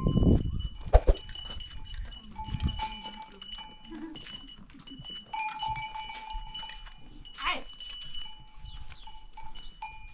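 Small metal livestock bells, goat bells, clinking and ringing irregularly as the goats move about. There is a sharp knock about a second in and a short falling sound near the end.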